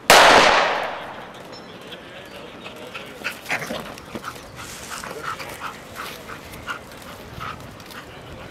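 A single loud blank-pistol shot that rings out for under a second, followed a couple of seconds later by a dog's repeated short high whines and yips.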